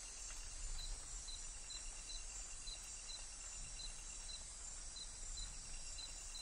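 Amazon rainforest night ambience: a steady high insect chorus with one insect's short chirp repeating about twice a second, over a faint low rumble.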